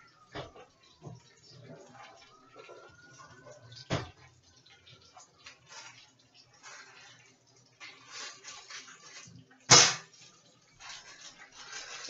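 Kitchen handling noises: a few light knocks, a faint drawn-out creak, some rustling and one sharp, much louder knock near the end. Rustling of a plastic bag picks up in the last second.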